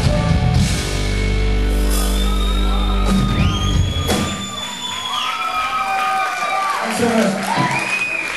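A live rock band ends a song: the full band gives way to a held, ringing final chord, a last crash comes at about four seconds, and then the audience whoops and cheers.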